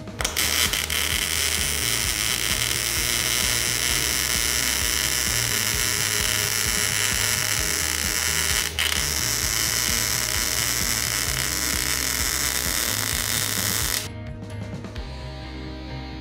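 MIG welding arc sizzling steadily as a bead is run on heavy steel plate, with a short break about nine seconds in; it stops about fourteen seconds in.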